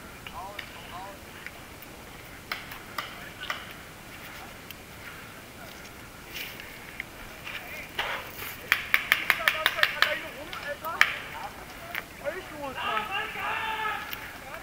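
Paintball marker firing: a few single pops, then about a second and a half in a fast even string of roughly eight shots a second.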